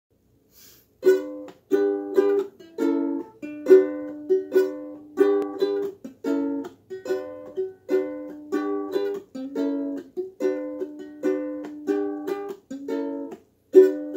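Solo ukulele strummed in a steady rhythm of chords, beginning about a second in: the instrumental intro before the singing comes in.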